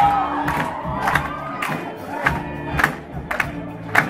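A mixed vocal group singing in unison over electric guitars and bass guitar. A held note ends just after the start, and the singing runs on over a sharp beat about twice a second.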